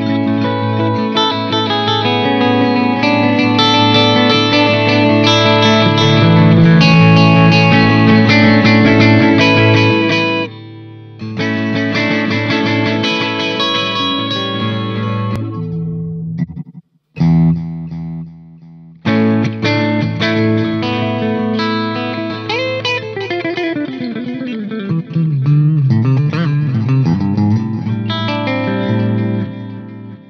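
Electric guitar played through a tube amp, its output going through a Fryette Power Station attenuator with an UltraTap effect placed after it: ringing chords and notes, with short breaks about ten and sixteen seconds in, and a note falling in pitch about two-thirds through.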